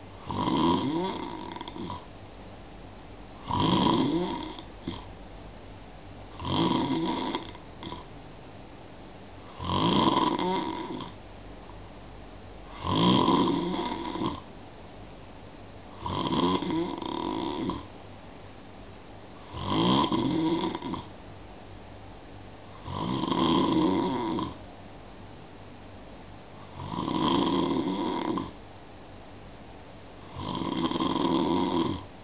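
Sleeper snoring slowly and regularly, about nine snores with one roughly every three seconds. Each snore lasts about a second, with quieter breathing between them.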